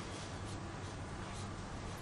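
Marker pen writing on a whiteboard: faint strokes of the tip on the board over a low, steady room hum.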